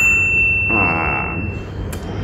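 A single bright ding, the bell-style sound effect of a subscribe-button animation, ringing out and fading away over about a second and a half.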